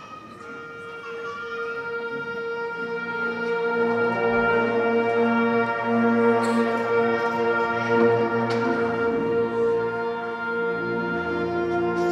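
Concert band wind and brass instruments holding long sustained notes. A single pitch starts, more players join it, and the sound swells louder over the first few seconds before holding steady. Near the end the sustained notes shift to a new chord.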